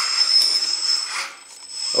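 Electric hydraulic pump and track drive motors of an RC LESU LT5 tracked skid steer, a steady high whine as it pushes down on its bucket and backs up its tracks to climb onto a trailer deck. The whine drops away a little past a second in and comes back briefly near the end.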